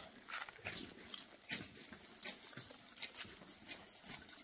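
Hand hoes scraping and striking soil as weeds are scuffled out around small plants, in irregular strokes a second or so apart.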